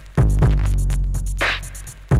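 A looped breakbeat from a DJ breaks record: two kick-drum hits with a deep, sustained bass note just after the start, steady hi-hats, and a single snare hit about three-quarters of the way through. The same two-second pattern repeats before and after.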